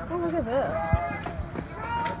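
A person's voice talking, with no clear words, and a short low thump about halfway through.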